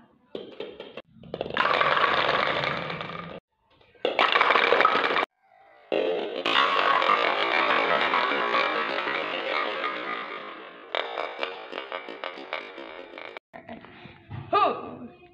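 Plastic toy bowling pins knocked down and clattering on a wooden floor, with abruptly cut-in bursts of music or sound effects before and during the crash; scattered rattling knocks follow near the end.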